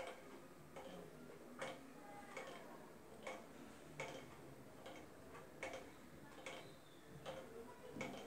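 Faint regular ticking, about one tick every 0.8 seconds, in a quiet room.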